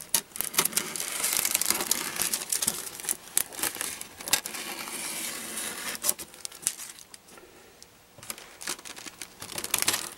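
Thin plastic laminating film being handled and trimmed with scissors: an irregular rustle with many small clicks and snips, dropping quieter for a moment near the end.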